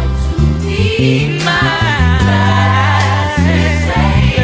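Gospel choir recording with lead and choir voices singing over an electric bass guitar playing held low notes that change every second or so.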